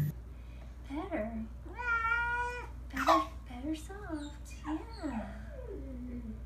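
A young kitten meowing repeatedly: a handful of short calls, with one longer drawn-out meow about two seconds in.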